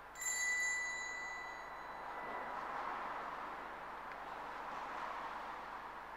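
A single strike of a small metal altar bell, its clear high tones ringing out and fading over about two seconds, followed by a soft lingering wash of sound.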